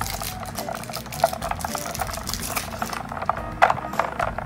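Water sloshing and splashing in a bowl as a small plastic doll is dunked and swirled in ice water, with many light irregular clicks and plinks.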